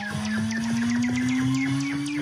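Electronic music: a synth riser (uplifter) in the Serum soft synth, one tone gliding steadily upward in pitch over quick, regular ticks of about five a second.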